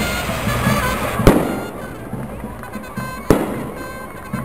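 Two loud firecracker bangs, about two seconds apart, each with a short echoing tail, over music and voices.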